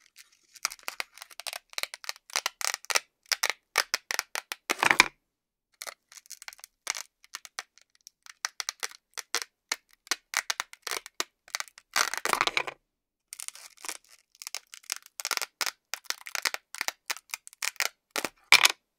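Velcro ripping apart in short crackly tears as a toy knife and fork pull through play food pieces held together by Velcro discs. The rips come in bursts with brief pauses, and the longest, loudest ones come about five seconds and twelve seconds in.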